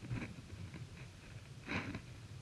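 Proton X50 heard from inside its cabin during a slalom run at about 50 km/h: a steady low rumble of engine and road noise, with two short hissing, breath-like sounds, a faint one near the start and a louder one near the end.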